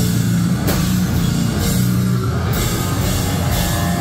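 Live deathcore band playing loud, with down-tuned electric guitar, bass and drums, and sharp drum and cymbal accents about once a second.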